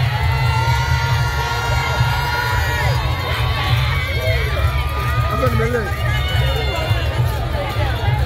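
Junkanoo parade band playing: dense, continuous drumming underneath brass horns holding long notes, mixed with crowd voices and shouts.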